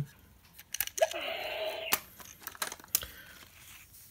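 Small plastic clicks and knocks as a toy combat robot is switched on and handled. About a second in, a short rising whir that holds steady for about a second, like its small motor spinning up.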